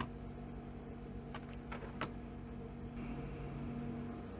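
A few light clicks and taps as a clear acrylic stamp block is inked on an ink pad and handled, over a steady low hum.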